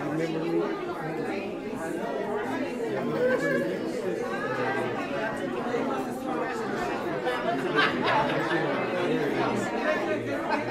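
Indistinct chatter of many people talking at once in a large room, voices overlapping without any single clear speaker. A short sharp sound cuts through just before eight seconds in.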